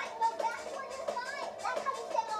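Young children talking and calling out in high voices.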